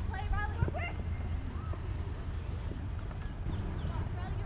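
Open-air ambience of a soccer match: faint, distant shouts from players and spectators over a steady low rumble, with one short sharp knock about half a second in.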